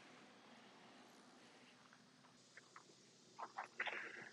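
Near silence: faint outdoor background hiss, with a few soft clicks near the end.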